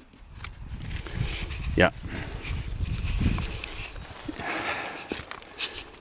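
Footsteps and camera handling noise, with a low, uneven rumble of wind on the microphone.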